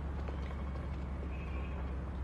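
Car running with a steady low rumble. A faint high-pitched squeal comes and goes in the middle.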